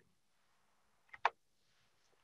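Near silence, broken by one short, sharp click about a second in.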